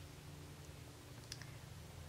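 Faint pen ticks on paper while writing in a spiral planner: a couple of small clicks about halfway through, over a low steady hum.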